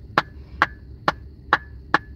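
Hand claps: five sharp claps in a steady rhythm, a little over two a second.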